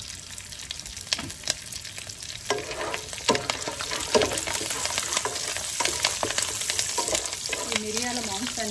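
Cashews and curry leaves frying in hot oil in a nonstick pan: a steady sizzle with many sharp crackles and pops. A wooden spatula stirs through them, adding scrapes and light knocks against the pan.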